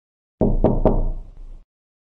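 Three knocks on a door, about a quarter second apart, followed by a short ringing tail.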